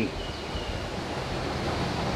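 Steady outdoor rush of wind and water, an even noise with no distinct events.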